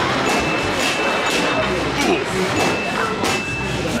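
Darts popping balloons at a carnival balloon-dart game: several sharp pops in quick succession over busy arcade background noise. A steady high tone sounds twice.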